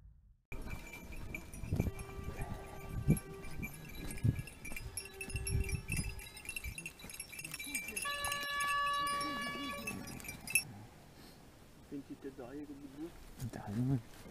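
A pack of hunting dogs over a shot roe deer, whining and yelping, mixed with several steady high ringing tones and scuffling thumps.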